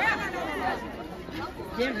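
Chatter of a crowd, several voices talking at once.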